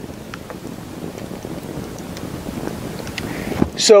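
Wind on the microphone: a steady rushing noise with a few faint clicks.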